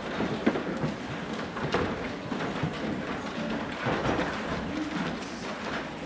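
Many irregular footsteps and knocks of people stepping up onto and walking along portable stage choir risers, with shuffling between them.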